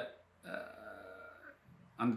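A man's faint, drawn-out throaty vocal sound, held steady for about a second, between spoken phrases.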